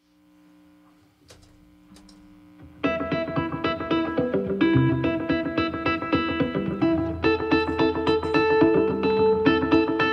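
A live rock band starts a song: a faint held note for the first few seconds, then electric guitar and bass come in together, loud, about three seconds in and play rhythmic chords.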